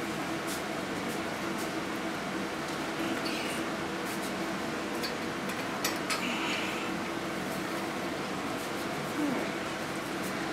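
A steady low mechanical hum, with a few faint clicks over it.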